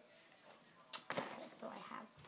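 A folded sheet of paper rustling and crinkling as it is handled, starting suddenly about a second in with a sharp crackle and going on in short rustles.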